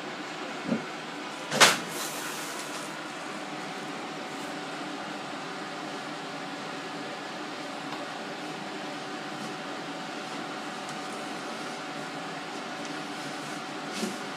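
A floor tile handled and set down on the subfloor: a light knock just under a second in, then a sharp, loud knock about a second and a half in, over a steady mechanical hum.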